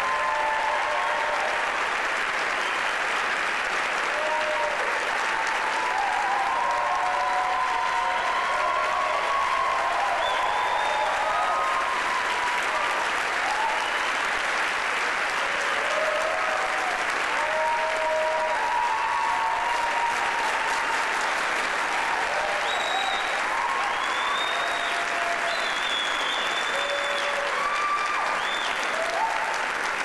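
Sustained applause from a concert audience and the chorus on stage, going steadily throughout, with scattered cheering voices heard above the clapping.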